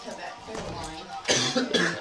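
A person coughing, two harsh coughs in the second half, with low voices talking before them.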